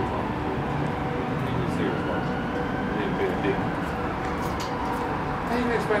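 Steady background noise with a faint hum running through it, and muffled voices now and then.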